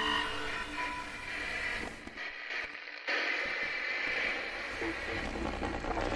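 Static-laden, garbled broadcast audio: hiss with steady hums and muffled voices underneath, like a radio or TV signal breaking up, changing abruptly about two and three seconds in.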